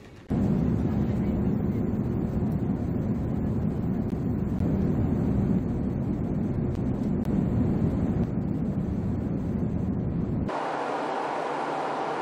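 Steady in-flight cabin noise of an Airbus A350-900 airliner, a deep rumble of engines and airflow. About ten seconds in it changes to a higher, hissier tone as the low rumble drops away.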